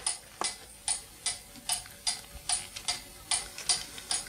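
A run of light, sharp ticking clicks, about three to four a second and not quite even, some coming in close pairs.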